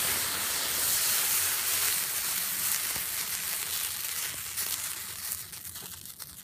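Iron oxide and aluminium thermite burning with a steady hiss that slowly weakens, with scattered crackles in the last couple of seconds.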